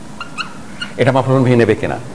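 Dry-erase marker squeaking on a whiteboard in a few short, high chirps as a word is written. About a second in, a man's voice speaks.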